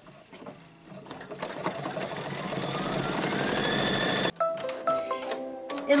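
Brother Luminaire embroidery machine sewing an appliqué tack-down stitch, the needle running faster and faster with a rising whine, then stopping abruptly. A short run of steady, stepped electronic tones follows the stop.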